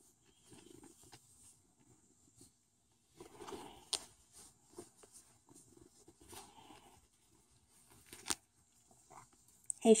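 Faint rustling of clothing fabric and handling noise as kittens are petted and shift about in a lap, with a couple of sharp clicks, one about four seconds in and one about eight seconds in.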